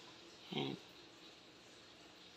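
Quiet room tone, broken by one short spoken word about half a second in.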